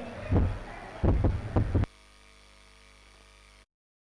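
A handful of low, irregular thuds in the first two seconds, after which the sound drops abruptly to a faint steady hum.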